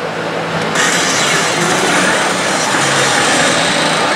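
Dense din of a pachislot hall: the hiss and clatter of many machines with a steady low tone underneath, growing suddenly louder and fuller about a second in.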